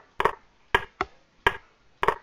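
Sharp computer clicks, about five, irregularly spaced, as moves are stepped through on a chess board in an analysis program.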